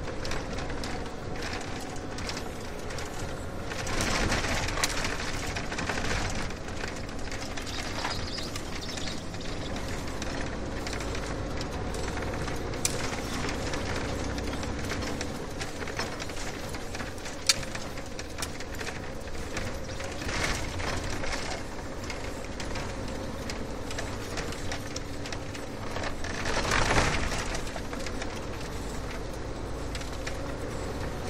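Steady road and engine noise of a car on the move, swelling twice: about four seconds in and again near the end. A couple of short sharp clicks come midway.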